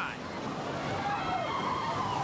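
Mine-train roller coaster rushing along its track: a steady rushing rumble of the cars on the rails, with a faint wavering high tone over it from about halfway.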